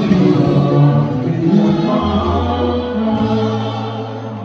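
A group of soldiers singing a gospel song together in chorus, holding long notes over sustained low bass notes, the music starting to fade near the end.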